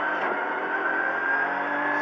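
Ford Fiesta R2T rally car's turbocharged three-cylinder engine pulling under acceleration out of a corner, heard from inside the cabin, its pitch climbing slowly and steadily within one gear.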